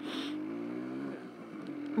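Kawasaki KH100's two-stroke single-cylinder engine running on the move, its pitch rising slightly over the first second, easing off briefly about halfway through, then holding steady.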